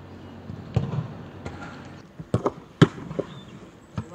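Football being kicked during goalkeeper training: a series of sharp thuds, with the loudest strikes bunched in the second half.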